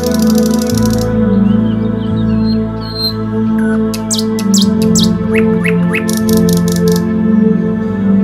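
Soft background music with steady, sustained chords, with birds chirping over it. There is a fast trill of chirps in the first second, and another run of short, high chirps between about four and seven seconds in.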